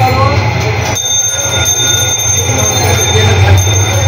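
A steady low hum with a noisy background and faint voices, without any chopping knocks.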